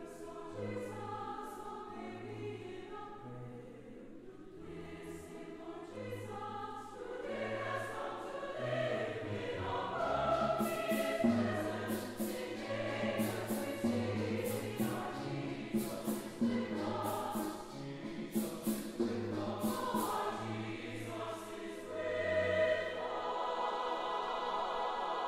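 Mixed choir singing in harmony with strings accompanying over a steady bass line; the music swells louder about ten seconds in.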